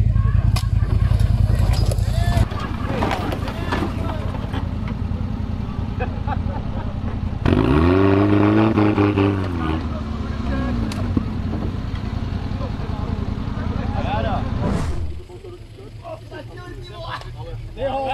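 Off-road 4x4 engines running under load as the vehicles crawl down a steep dirt slope. About seven and a half seconds in, an engine revs up and back down over a couple of seconds. The engine sound drops away near the end, leaving voices.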